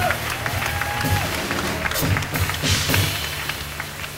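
Live acoustic jazz from a piano, upright bass and drum kit trio, with low plucked bass notes under cymbal strokes. A held mid-range tone bends in pitch about a second in.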